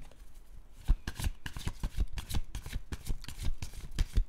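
A tarot deck being shuffled by hand: a rapid run of card snaps, about five a second, starting about a second in.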